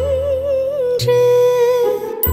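A woman's voice carries the song's melody without words, over a steady keyboard bass. The line wavers for about a second, then settles into a long held note that slides down and breaks off just before the end.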